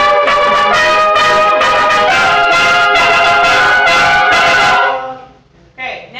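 Concert band playing a loud passage with the brass to the fore, sustained chords shifting about every half second. The band cuts off about five seconds in.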